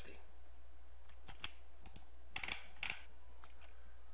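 A few light clicks and two short scraping strokes at a computer, from a mouse and keyboard in use, over a low steady hum.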